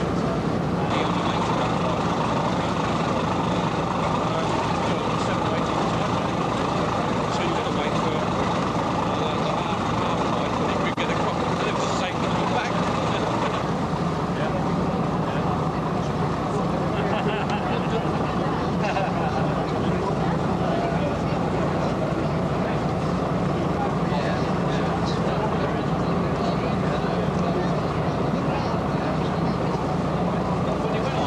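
Ferry's engine droning steadily under indistinct chatter of people on deck.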